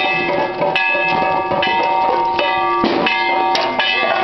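Procession band music: held, steady notes over drum strokes that fall about twice a second.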